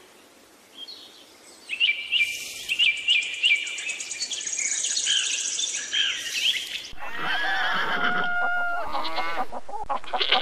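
Birdsong: a run of sharp, repeated chirps over a fast high trill begins about two seconds in. In the last three seconds it gives way to lower calls that waver in pitch.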